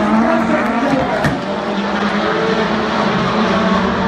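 Rallycross Supercars' turbocharged four-cylinder engines running hard around the track, a steady engine note that wavers a little in pitch.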